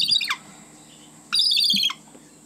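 A bird chirping in two quick bursts of rapid high-pitched notes, the first ending in a short falling note and the second about a second later.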